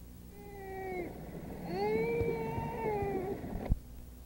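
A young child's voice making two drawn-out, wordless high-pitched cries: a short one, then a longer one that rises and falls. A sharp click follows near the end.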